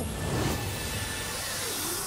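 Cartoon magic-spell sound effect: a steady rushing whoosh with a high hiss, as a spell sends characters away.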